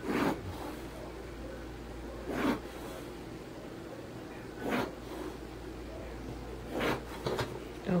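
Pencil drawn along a ruler across paper: four short scratching strokes about two seconds apart.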